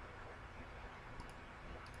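A few faint computer mouse clicks in the second half, over low steady microphone noise.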